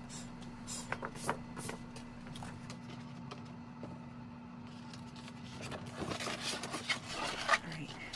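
Light scrapes, taps and rustles of a black backdrop sheet being slid into a folding photo lightbox and the box's panels being handled, busier near the end, over a steady low hum.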